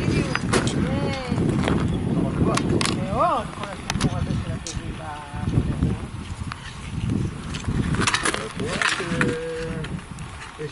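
People's voices talking and calling out, the words not clear, over a constant low rumbling noise. One rising-and-falling call stands out about three seconds in.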